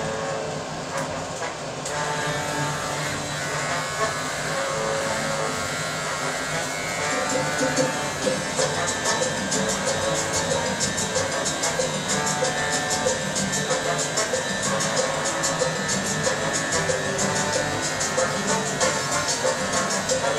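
Electric hair clippers buzzing as they trim and line up a beard, over background music.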